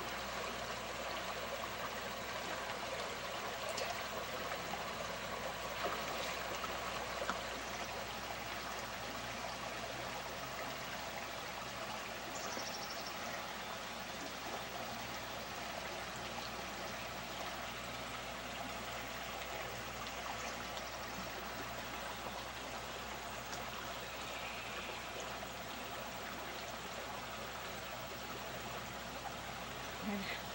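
Shallow river running over stones: a steady rush of flowing water.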